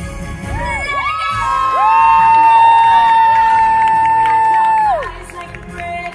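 Theatre audience cheering, whooping and shouting over a stage musical's music. One loud, high voice is held for about three seconds, then slides down and stops about five seconds in.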